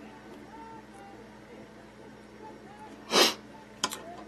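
One short, sharp burst of breath from the tier about three seconds in, loud against the quiet room, followed about half a second later by two quick clicks.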